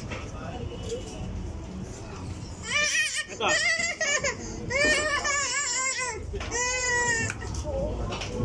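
A toddler's high-pitched, whiny cries, like a protesting "no, no", four short wavering bursts in the second half over low background noise.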